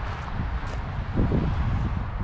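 Low rumbling wind noise on an outdoor handheld microphone, steady throughout.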